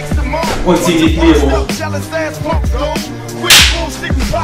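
Hip hop music: a male voice rapping over a bass line and drum beat. A sharp hit stands out as the loudest moment about three and a half seconds in.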